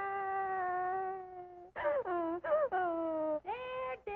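A wailing, moaning cartoon cry: one long held note that sags slightly in pitch, then several shorter notes that swoop downward, the last one rising and then holding.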